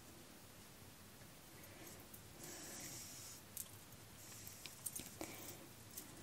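Faint handling sounds of darning on a Speedweve loom: two soft swishes of yarn being drawn through the knitted sock, with a few light clicks from the needle and the loom's metal hooks in the second half.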